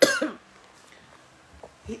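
A woman coughs once, a short sharp cough, followed by quiet.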